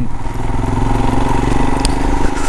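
Royal Enfield Himalayan 411's single-cylinder engine running steadily as the motorcycle rides along, a low even drone.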